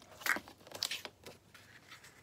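A Fiskars sliding paper trimmer cutting a strip of patterned paper: the blade carriage is run along its rail, giving a few short cutting strokes and clicks in the first second and a half.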